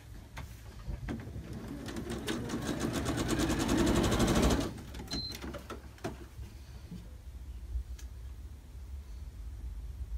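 Electric sewing machine stitching a seam in quilt pieces, the rapid run of stitches building up and getting louder over about three seconds before stopping abruptly halfway through. A short high beep and a few light clicks follow.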